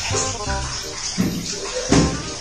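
Water running from a kitchen tap into a sink while dishes are washed, under background music with a beat.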